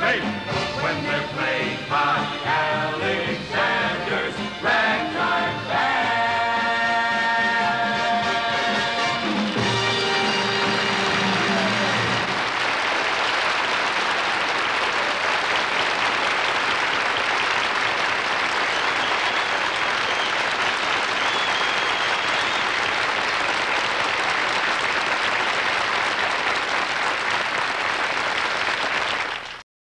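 The band plays the last bars of a ragtime song at a brisk beat and ends on a long held final chord. About ten seconds in, a studio audience breaks into applause, which then stays steady.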